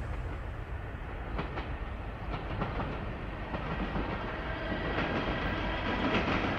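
A steady low rumbling noise with scattered faint clicks, with no music or speech.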